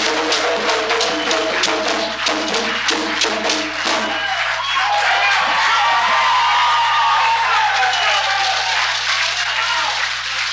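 Live hand-drum ensemble playing a driving rhythm for the dance troupe that stops abruptly about four seconds in. Audience applause and cheering with whoops follow.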